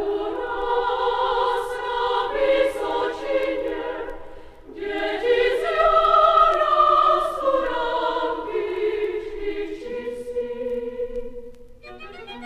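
Children's choir singing in Czech in two phrases, with a short break about four seconds in.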